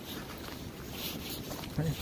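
Wind rumbling on the microphone, with faint steps on a dirt trail strewn with dry leaves. A voice calls "Hey" at the very end.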